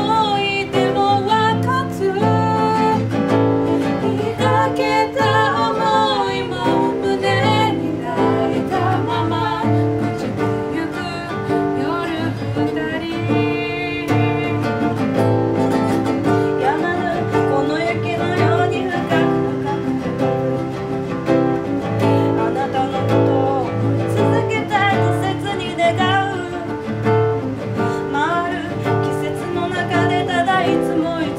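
Acoustic guitar played live as accompaniment to female singing in Japanese, a slow pop ballad performed without a break.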